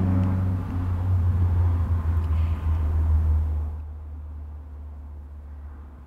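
A low, steady rumble, loud at first, fading away over the second half.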